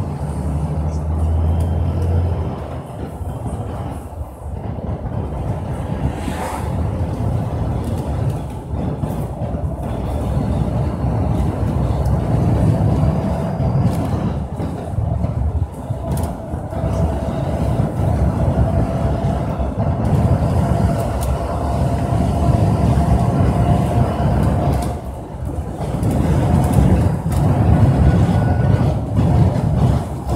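A vehicle driving along a road, with steady engine and road rumble that swells and dips. A faint steady whine comes in about halfway through.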